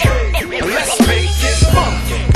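Hip hop track: rapped vocals over a drum beat with a deep, steady bass.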